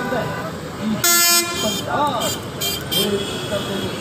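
A vehicle horn sounds one short blast about a second in, the loudest sound here, over passing road traffic and voices.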